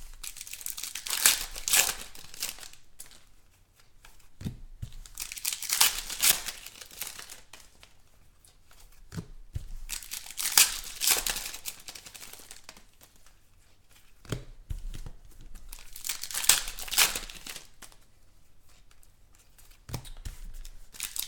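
Shiny foil trading-card packs being torn open by hand, four rips roughly five seconds apart, each with crinkling of the wrapper. A few short knocks fall between the rips.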